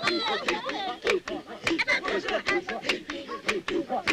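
Several San voices calling, chattering and laughing over one another, with sharp claps about twice a second marking the dance pulse.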